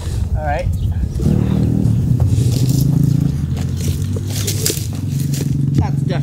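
A motor vehicle engine running steadily, setting in about a second in, with some rustling through the bare tree's branches.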